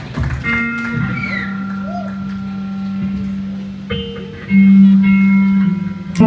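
Live band's electric guitars ringing out slow, sustained notes, with a brief gliding tone early and a new, louder low note struck about four and a half seconds in.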